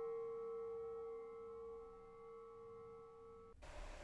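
A faint bell-like ringing tone made of several steady pitches, fading slowly and cutting off suddenly shortly before the end.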